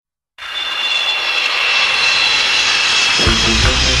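An industrial goth rock track starts abruptly out of silence with a loud, hissing noise wash carrying high steady tones. About three seconds in, heavy drums and bass come in.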